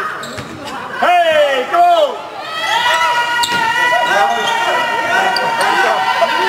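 Basketball bouncing on the court among spectators' shouts, loudest about a second in, with a long steady tone joining from about halfway through.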